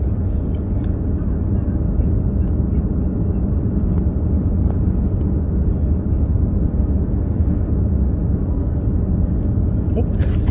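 A car driving steadily along a road, heard from inside the cabin: an even, low rumble of engine and tyre noise.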